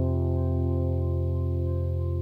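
Music: a single sustained electric guitar chord with chorus and distortion effects ringing out, slowly fading at the end of the song.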